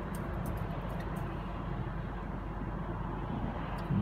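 Steady road and tyre noise inside a car's cabin while it drives at highway speed.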